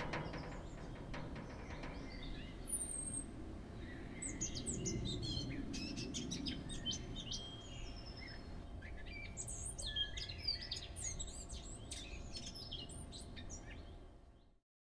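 Birds chirping and calling over a low, steady background rumble. The chirps grow busier in the second half, then everything fades out near the end.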